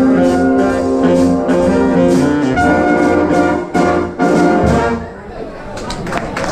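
Big band playing swing, with the brass section holding chords over a steady drum beat. Near the end the band hits a final note and stops, and room chatter follows.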